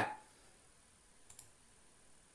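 Near silence broken by two quick, faint clicks a fraction of a second apart, a little over a second in.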